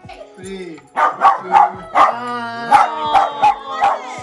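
Small dog barking, a quick run of short sharp barks starting about a second in.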